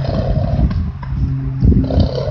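Wind buffeting the microphone in a low, uneven rumble, over a steady low engine drone. A short blowing noise comes about 1.7 seconds in.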